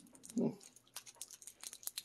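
A short murmured "hmm" from a man, followed by scattered faint clicks and rustles.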